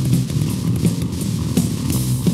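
Raw punk hardcore band playing an instrumental stretch: electric guitar and bass riff over drums with cymbal hits at a steady, driving pace.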